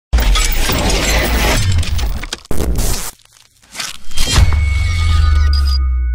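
Logo-reveal intro sound effects: a dense, noisy rush with a sharp hit about two and a half seconds in, a brief drop-out, then a deep bass boom about four seconds in that rings on with two high steady tones.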